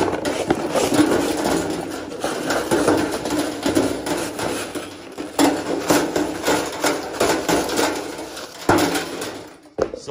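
Long wire-bristle engine-cleaning brushes being dropped and laid one after another onto the sheet-metal tray of a shop cart: a continuous clatter of clinking and rattling with scattered sharper knocks, stopping suddenly just before the end.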